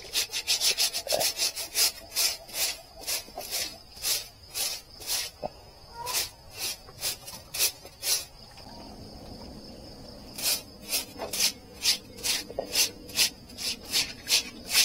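Stiff stick broom scrubbing a wet concrete floor in quick, regular strokes, about two to four a second, pausing for a couple of seconds past the middle before starting again.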